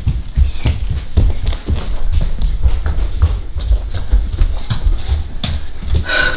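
Footsteps of people running across a hard wood-look floor, a quick, uneven series of thuds.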